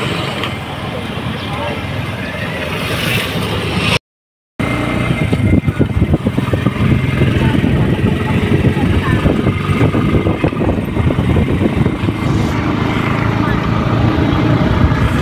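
Motorcycle running along a road with wind buffeting the microphone, heard from the rider's seat. The sound cuts out for half a second about four seconds in, then comes back louder with heavier wind rumble.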